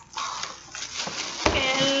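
Cardboard box and clear plastic wrapping rustling as a boxed appliance is unpacked and lifted out, with a voice near the end.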